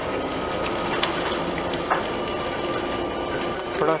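Steady noise of a Hyundai i20 creeping along at low speed, heard from inside its cabin.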